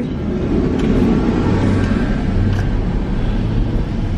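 Steady rumble of a car running, heard from inside the cabin, with a faint steady hum underneath.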